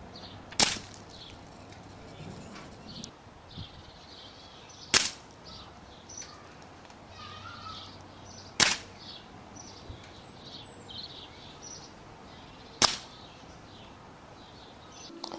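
Four sharp cracks about four seconds apart: air rifle shots, each pellet striking the end of a tin can packed with ice.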